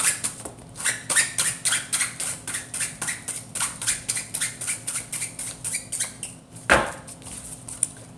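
A deck of oracle cards being shuffled by hand, with quick, even card flicks several times a second. Near the end there is a single louder snap as the deck is knocked together.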